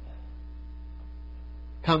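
Steady low electrical hum in the sermon recording, with faint steady higher tones above it. A man's voice starts a word near the end.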